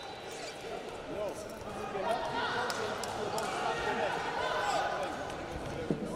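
Many overlapping voices calling and shouting in a large arena hall, with a few sharp knocks.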